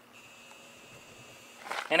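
Faint, steady, high-pitched insect buzzing; a man's voice starts near the end.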